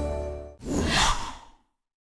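A musical logo sting fading out, followed about half a second in by a short airy whoosh sound effect that swells and dies away within about a second.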